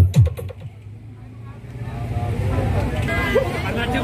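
Electronic dance music with a heavy, pitch-dropping kick drum, played through a battle sound system's speaker stacks, cuts off about half a second in. A low steady hum remains, and crowd chatter rises from about two seconds in.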